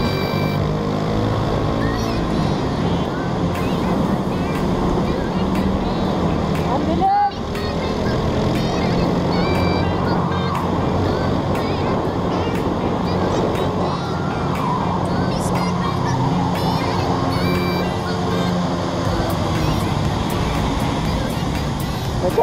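Suzuki Smash 115 motorcycle's small single-cylinder four-stroke engine running steadily at cruising speed, mixed with wind and road noise, while riding through a road tunnel. The sound cuts out briefly about seven seconds in.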